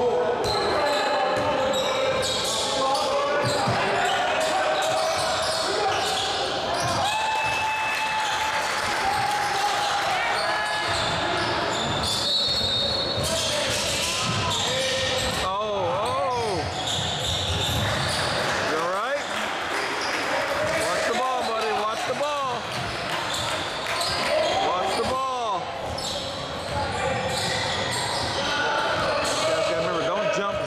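Indoor basketball game: a ball bounced on the hardwood court, short sneaker squeaks during the run of play, and a steady hubbub of indistinct voices, all echoing in the gym.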